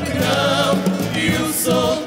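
A man and a woman singing a fado duet, their voices wavering with vibrato, over acoustic guitar accompaniment.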